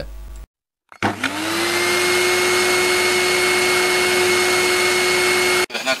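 A steady whir with a rushing noise, like a small motor running: its hum rises in pitch over the first half second as it spins up, then holds level. It starts just after a brief dead silence and stops abruptly.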